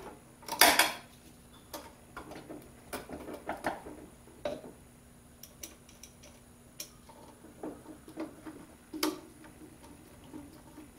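Small metallic clicks and taps of wire ring terminals and screws being handled at a phase converter's terminal block, irregular and spread out, with one louder clatter just under a second in.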